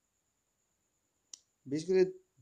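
Dead silence, then a single short, sharp click about a second and a half in, followed at once by a man's voice starting to speak.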